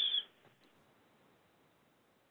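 The last of a spoken word, ending in a brief high tone, then near silence: faint room tone.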